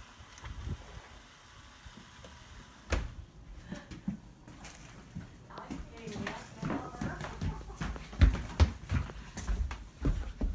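A sliding patio door knocks shut about three seconds in, then indistinct voices, then heavy footsteps thudding across a floor near the end.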